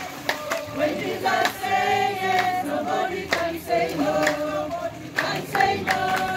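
A group of voices singing a worship song together, accompanied by hand claps on the beat.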